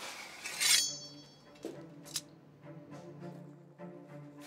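A sharp metallic clink about half a second in, ringing briefly, and a lighter click about two seconds in, over low sustained background music.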